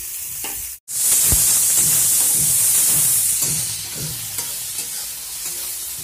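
Chopped onions, garlic and green chillies sizzling in hot oil in a metal kadhai, with repeated scrapes of a metal spatula stirring them. The sizzle cuts out for an instant just under a second in, then comes back louder for a couple of seconds before settling.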